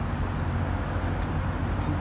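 Steady low engine drone on the water, with wind and water noise over it.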